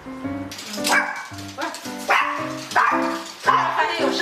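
Background music with a steady stepping bass line, over which a small poodle barks several times.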